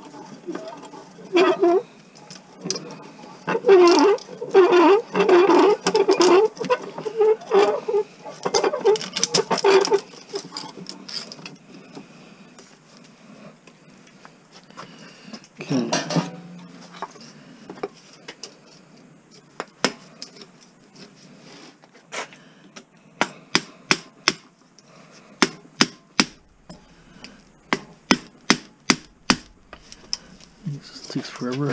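Hammer striking a chisel against a small electric fan motor held in a bench vise, metal on metal. A quick run of ringing blows fills the first ten seconds, a single heavier blow comes about halfway, and near the end there are steady sharp taps, about two a second, as the chisel cuts into the motor's copper windings.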